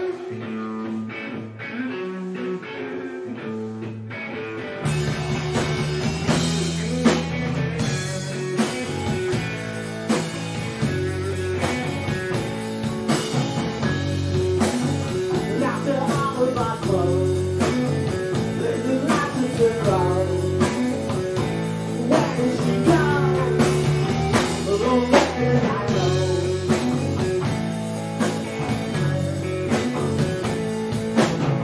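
Live rock band of electric guitar, electric bass and drum kit playing a song from its opening. The song starts sparse, then grows fuller and louder about five seconds in and carries on.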